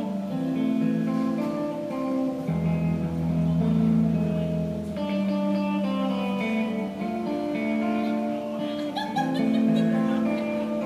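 Amplified guitar playing a slow run of ringing chords, each held for a second or two before the next, with a low bass note under some of them.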